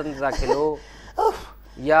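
A man talking, broken about a second in by a short, breathy vocal sound like a gasp, before speech resumes.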